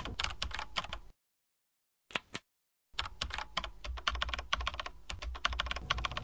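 Typing on a computer keyboard: rapid runs of key clicks. About a second in the typing stops dead for nearly two seconds, with one short burst of keystrokes in the gap, then carries on steadily.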